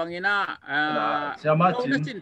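A man speaking over a video call, with one long drawn-out vowel held at a steady pitch near the middle.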